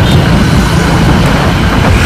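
A motorcycle riding along a highway, heard from the rider's seat: a loud, steady rush of wind and engine noise.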